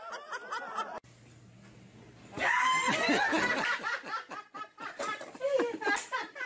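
A group of people laughing hard, with a shouted "what" in the middle of it. The laughter follows a short lull with a low hum, which begins about a second in.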